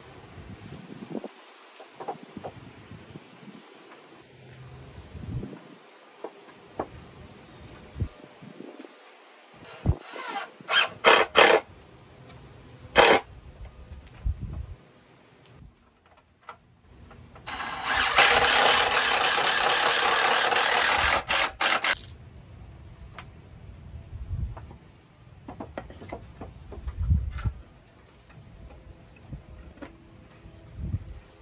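Cordless drill driving screws into wood: a quick cluster of short trigger bursts, another single burst, then one steady run of about four seconds. Wind gusts rumble on the microphone during the first third.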